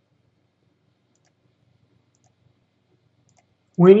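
Near silence with a few very faint clicks, then a man's voice begins near the end.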